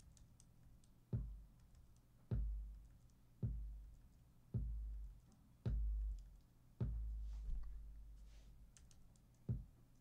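Roland TR-808 kick drum samples previewed one after another, about one a second: six deep booms with long low tails, the sixth ringing on longest, then a shorter kick near the end. Soft computer-key clicks fall between them.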